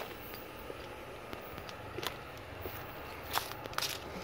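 Footsteps on gravel and grass, a few separate steps.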